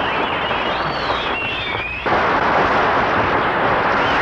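A loud, dense din of explosion-like blasts with wavering, whistling pitch glides over it, in the manner of a war or fireworks sound-effect track on a mixtape. It thins out briefly just before two seconds in, then comes back at full strength.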